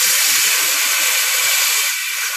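Compressed air hissing loudly and steadily out of a truck's air-brake hose coupling as it is disconnected from the trailer: the line's 12 bar of pressure venting.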